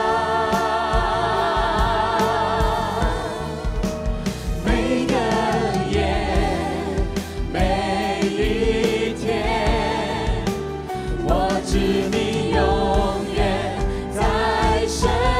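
A worship team of men's and women's voices singing a slow Chinese worship song with vibrato, over instrumental accompaniment.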